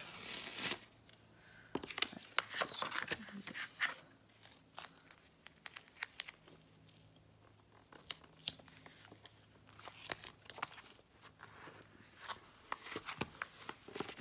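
Black duct tape being ripped and pulled, then pressed along the edge of a clear plastic folder, with crinkling of the plastic sheet. The loudest rips come in the first few seconds, followed by scattered clicks and rustling as the tape is smoothed down.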